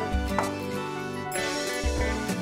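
Background music with sustained chords and repeated bass notes.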